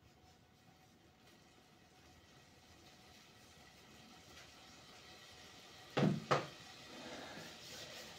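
Two sharp knocks a fraction of a second apart, about six seconds in, from something handled in the kitchen. Under them is a faint hiss that slowly grows louder.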